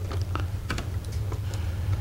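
A Phillips screwdriver turning a small coarse-threaded wood screw into a plastic receptacle in a foam model airplane's tail, giving light, irregular clicks, over a steady low hum.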